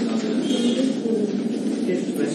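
Low, continuous murmur of many students' voices chattering in a classroom.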